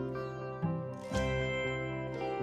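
Instrumental background music, with new notes coming in every half second to a second.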